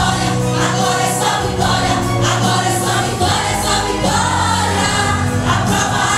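Women's group singing a gospel song, one lead voice amplified through a microphone and the others singing along, over continuous musical accompaniment.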